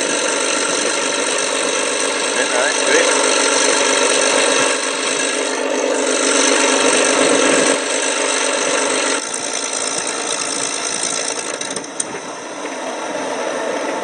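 Radio-controlled P-51 Mustang model's engine idling on the ground, a steady rattling run. It drops in level about nine seconds in, with a single sharp click about twelve seconds in.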